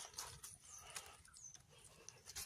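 Faint rustling and a few soft clicks of a hand and knife working in moss and leaf litter around a mushroom, with a few faint short high whistles falling in pitch.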